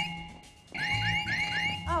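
Home security alarm sounding its entry warning: rising electronic chirps, about four a second, over a steady high tone, in bursts with a short break just after the start. It signals that the alarm has been set off by the door opening and is waiting for an ID code to be entered.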